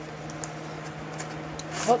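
Faint rustling and scraping of a small cardboard blind box being opened by hand, over a steady low hum.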